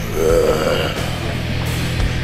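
Heavy rock backing music, with a man's short throaty vocal sound, wavering in pitch, lasting less than a second just after the start.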